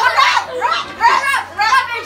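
Young boys' excited voices, shouting and laughing over one another with no clear words.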